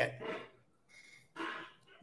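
A man's voice trailing off at the end of a word, then a brief, faint vocal sound in his throat about one and a half seconds in.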